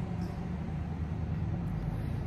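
A steady low background hum with no other distinct sound.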